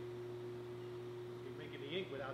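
Steady electrical machine hum with a constant mid-pitched tone that cuts off just before the end; faint voices come in near the end.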